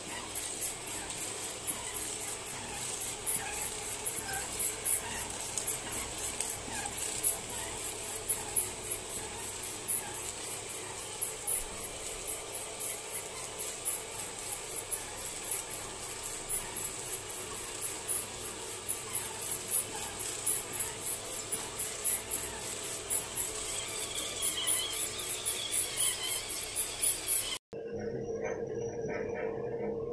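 Paging machine with a press feeding plastic bags one by one: a rhythmic high-pitched squeak or chirp about three times a second, one for each feed cycle. Near the end it cuts off suddenly and a steady low hum takes over.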